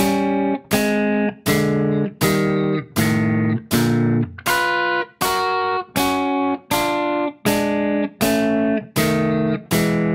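Electric guitar playing a warm-up drill of two-note dyads that move across the neck. About two strikes a second, each one let ring and then cut short before the next.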